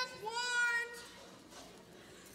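A single high, drawn-out vocal cry, a little over half a second long, made by a person in a cat-like, mewing way.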